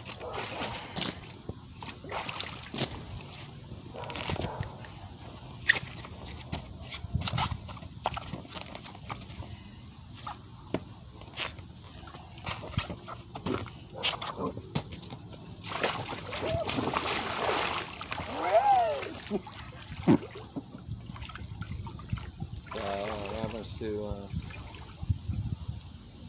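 Water sloshing and splashing in an inflatable hot tub as a person climbs in and settles into the water, with scattered knocks and taps along the way.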